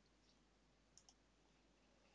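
Near silence, with two faint computer mouse clicks about a second in.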